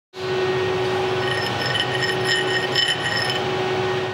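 Steel scraped against the edge of a plasma-cut steel part to knock off stubborn dross: intermittent high metallic squeals from about a second in until near the end, over a steady shop hum with a constant tone.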